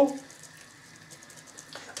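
Jaxon Saltuna 550 sea reel being cranked fast, winding heavily twisted test line onto its spool: a faint, steady hiss with a few light ticks.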